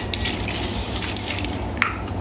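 A handheld facial mist spray bottle being spritzed toward the face: a few short hissing puffs.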